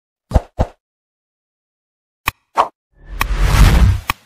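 Sound effects from a like-and-subscribe button animation: two quick plops, a gap, then a sharp click and another plop, followed by a whoosh that swells for about a second near the end.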